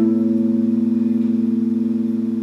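An electric guitar chord left ringing, held and slowly fading, with no new strum.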